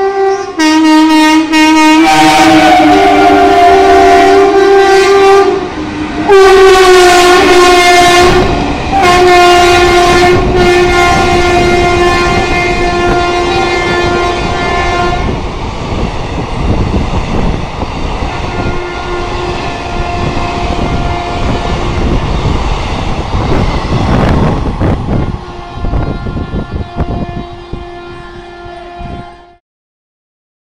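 A WAP-4 electric locomotive's horn sounds in several long blasts as an express train passes at speed. The blasts are loudest in the first fifteen seconds and fainter after that, over the rush and rattle of the coaches on the rails. The sound cuts off abruptly just before the end.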